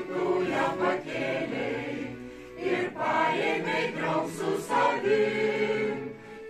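Mixed choir of women's and men's voices singing a Lithuanian folk song together, with a short break between phrases about two and a half seconds in.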